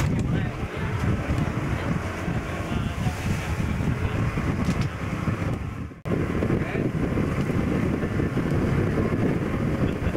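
Motorboat running across open water, with strong wind buffeting the microphone. The sound breaks off for an instant about six seconds in, then carries on.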